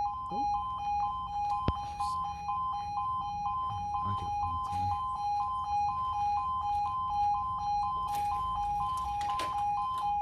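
Level crossing audible warning alarms sounding a steady two-tone warble, switching between two pitches about three times a second. It starts together with the amber road lights, signalling the start of the crossing's warning sequence for an approaching train before the barriers lower.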